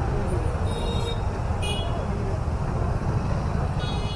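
Busy street traffic with a steady low rumble and voices of a crowd, cut by short high vehicle-horn toots: two about a second apart near the start and another near the end.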